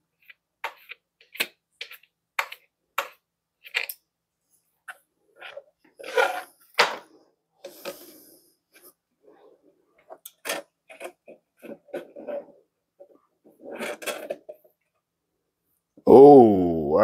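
A run of sharp plastic clicks and taps, about two a second, then rustling and softer knocks, from a clear plastic catch cup and paintbrush being worked against the inside of an acrylic tarantula enclosure.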